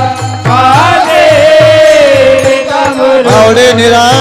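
Warkari bhajan: a group of male voices singing long held notes in chorus, with brass taal hand cymbals and a steady low beat about two to three times a second. The singing drops out briefly just after the start.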